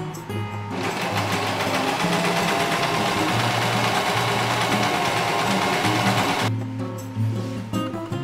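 Electric sewing machine running steadily, stitching fabric, for about six seconds: it starts just under a second in and stops about a second and a half before the end. Background music with a steady bass line plays throughout.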